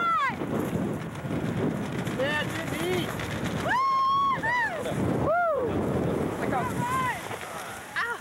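Voices calling out and whooping in short bursts, with one long held call about four seconds in, over wind rumbling on the microphone.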